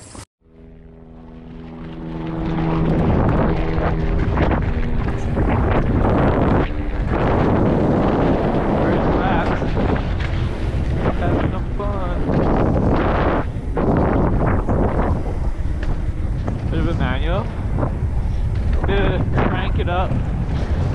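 Mountain bike descending a dirt trail, heard on a helmet-mounted GoPro: wind rushing over the microphone mixed with the rattle of tyres and bike over dirt. It builds over the first couple of seconds, and there are a couple of brief squeals near the end.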